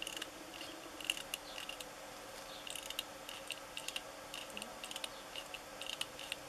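Light clicking and rattling of a small 3D-printed resin model's suspension mechanism as it is handled and worked by hand, the small parts ticking in irregular clusters.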